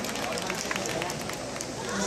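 Athletics stadium ambience: a steady murmur from the crowd, broken by many short sharp clicks.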